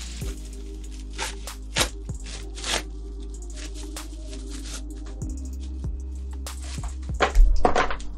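Background music over the crinkling and tearing of a plastic mailer bag being cut open and pulled apart by hand, in short crackly bursts. Near the end comes the loudest sound, a thump as a small box is set down on the wooden tabletop.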